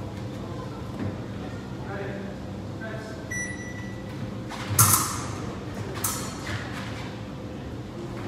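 Echoing background of a large fencing hall with faint distant voices and a steady hum. A short electronic beep comes about three seconds in, then a sharp, ringing crack, the loudest sound, just before the middle, and a softer one about a second later.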